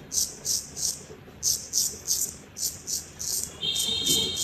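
Straight razor scraping through shaving lather and stubble on a man's jaw, in short quick strokes about two to three a second. Near the end a faint, steady high tone sounds alongside the strokes.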